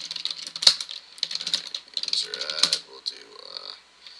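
Typing on a computer keyboard: quick keystroke clicks in irregular runs.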